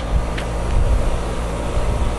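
Steady low rumble with an even hiss over it and a faint click about half a second in; no distinct event stands out.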